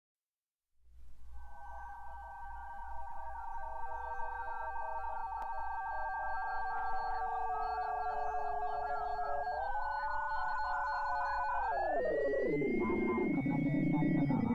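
Electronic music built from shortwave radio sounds: several steady held tones over a low pulsing hum. About ten seconds in the tones step up, then several slide downward while one climbs higher.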